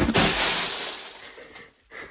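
A finished cardboard jigsaw puzzle swept off a table: a sudden crash, then the clatter of hundreds of pieces scattering on the floor, fading over about a second and a half.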